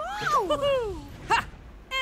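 Cartoon character voices: two overlapping excited whoops falling in pitch, then a short, sharp "Ha!".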